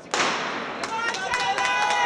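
A starter's pistol shot, one sharp crack echoing through a large indoor arena to start the race, followed about a second later by spectators shouting and cheering.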